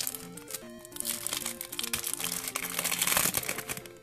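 Foil Pokémon booster-pack wrapper crinkling as it is pulled and torn open by hand, the crackle busiest in the second half. Quiet background music with slow, steady notes plays underneath.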